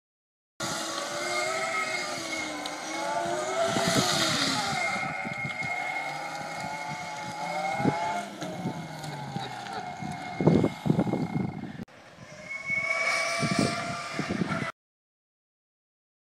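Electric go-kart's 5 kW brushless motor and chain drive whining, the pitch gliding up and down as the kart speeds up and slows, over a steady high-pitched controller tone. A few sharp knocks come about ten seconds in, and the sound breaks off briefly a little later.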